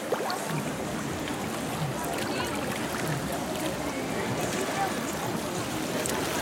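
Crowded swimming-pool ambience: water sloshing and splashing around people wading, under a steady background of many voices.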